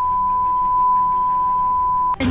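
Censor bleep: one steady, single-pitch beep tone held without a break, covering the dashcam audio.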